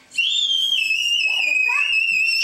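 A long, high-pitched whistling tone that starts just after the beginning, holds nearly steady and steps slightly lower partway through.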